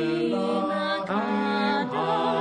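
Mixed-voice a cappella group singing a Hebrew song in close harmony, several voices holding chords together, with a short break between phrases about a second in.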